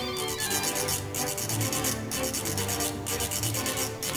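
Orchestral music with a brisk scraping or shaking percussion rhythm out in front, its strokes breaking briefly about once a second, over pitched orchestral lines.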